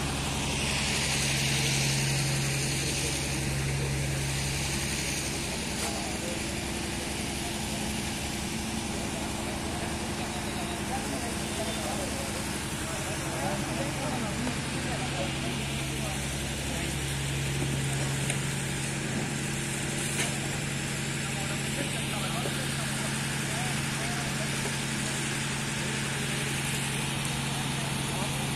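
A steady low machine hum of a running engine, which fades about five seconds in and comes back strongly about halfway through, under indistinct voices of people nearby.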